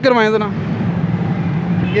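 A steady low engine drone, with a man's voice trailing off in the first half second.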